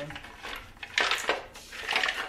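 Hollow bowls knocking and clattering against each other as they are handled in a wicker basket, in two short bursts: about a second in and again near the end.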